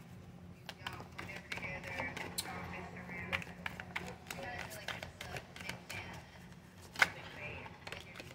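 A deck of round oracle cards being shuffled by hand: a quick run of light card clicks and flicks, with one sharper snap about seven seconds in.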